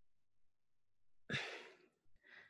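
A person's short sigh, breathing out, about a second and a half in, after near silence.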